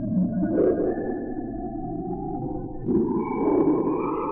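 Sonified Juno spacecraft data: a noisy, synthetic drone with faint steady higher tones above it, swelling about half a second in and again about three seconds in, where a new higher tone enters.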